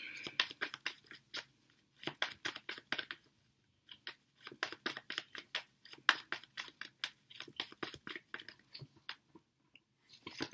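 Tarot cards being shuffled and handled by hand: a quick run of crisp card slaps and flicks, several a second, broken by a short pause about three and a half seconds in.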